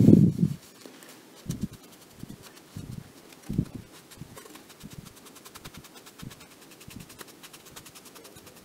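Quiet bench handling while gluing small driver parts: a low thump at the start, then a few soft, short knocks over a faint background.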